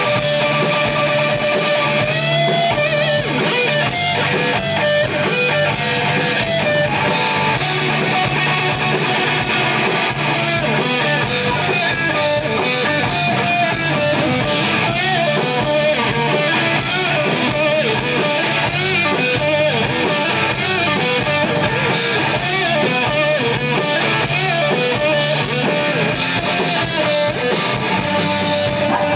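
Rock band playing live: an instrumental passage led by electric guitar over bass guitar and drums.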